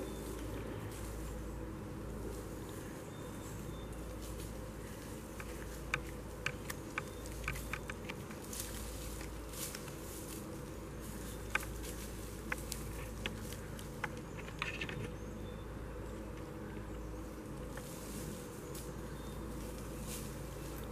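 Steady insect buzzing, like flies or bees. Scattered light snaps and clicks run through the middle: footsteps through dry leaf litter and twigs.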